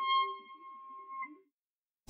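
A held, high musical note with a few overtones from the band's instruments, the final sustained note of the song, fading out about a second and a half in.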